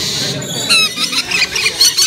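Several rainbow lorikeets calling, a rapid flurry of short, high-pitched squeaks and chirps starting about half a second in.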